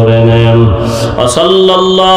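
A man's voice chanting an Islamic supplication in long, drawn-out notes. A low held note breaks off a little under a second in, and the voice comes back on a higher held note.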